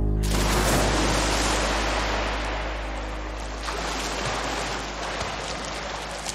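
Water rushing and splashing, swimming-pool water churned by a swimmer, setting in abruptly just after the start and slowly fading, over a low steady music drone.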